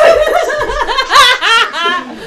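A woman laughing loudly and hard, a quick run of high-pitched ha-has.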